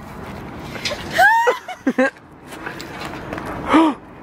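Laughing gasps and squeals from a young woman: a high rising squeal about a second in, two short yelps around two seconds, and a falling cry near the end, over steady outdoor background noise.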